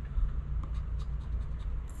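A coin scraping the scratch-off coating from a lottery ticket in a rapid run of short strokes, uncovering the numbers one spot after another.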